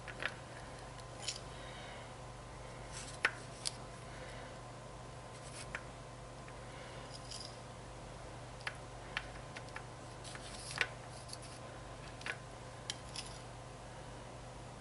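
Light clicks, taps and scrapes of a table knife dipping into a bowl of melted chocolate and spreading it over candies on waxed paper, scattered irregularly over a faint steady hum.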